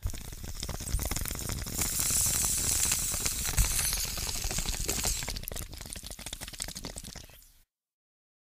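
Fire crackling and sizzling, a dense run of small pops and crackles that fades toward the end and then cuts off.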